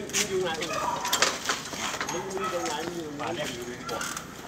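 People's voices talking, with a few sharp clicks.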